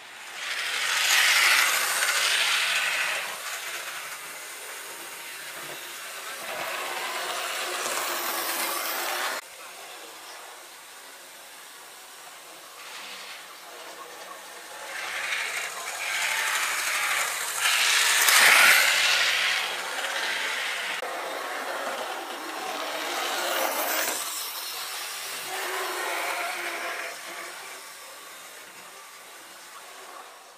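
Model train running along the track, heard close up: a rushing rail noise that swells and fades several times and cuts off sharply about nine seconds in.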